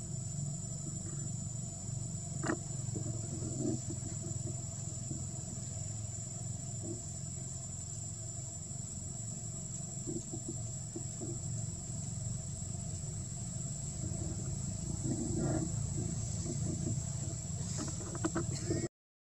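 Steady outdoor background rumble with a continuous thin high-pitched tone over it, and a few faint snaps or rustles now and then.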